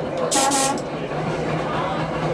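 1926 Brill interurban trolley car running along the rails with a steady low hum. About a third of a second in, a brief hiss lasts about half a second.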